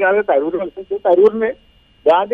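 Speech only: a voice talking in Malayalam that stops about a second and a half in.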